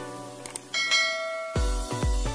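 Subscribe-animation sound effects over background music: a couple of sharp clicks about half a second in, then a bell ding that rings out. About halfway through, a dance beat with heavy, evenly spaced bass kicks comes in.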